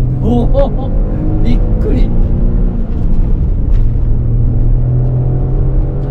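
A Spoon-tuned turbocharged Honda N-ONE's small three-cylinder engine pulling under load on track, with a steady engine drone that dips briefly about three seconds in.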